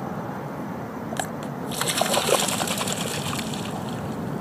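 Water splashing and trickling around American coots swimming and diving on a pond. The water is quiet at first, then a busy run of small splashes starts about two seconds in.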